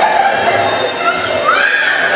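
People laughing and shrieking, with a high rising squeal about one and a half seconds in.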